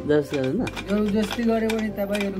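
A man's voice speaking, mixed with scattered short clicks.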